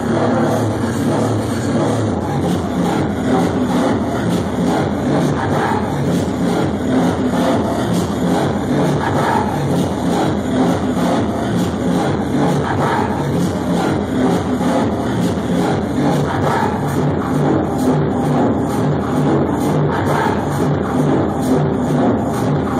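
Electronic dance music from a live DJ set played loud over a nightclub sound system, with a steady beat.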